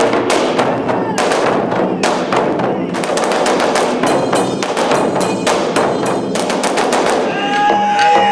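Ensemble of Japanese taiko drums, large barrel drums struck with wooden sticks in a fast, dense rhythm. About seven seconds in, a held pitched tone joins the drumming.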